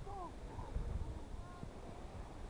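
Wind buffeting the microphone, with faint distant voices from a crowded beach.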